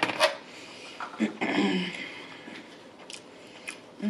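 Chopsticks set down on a plate with a sharp clack. About a second later comes a short hummed 'mm', and near the end a couple of faint clicks as a condiment packet is handled.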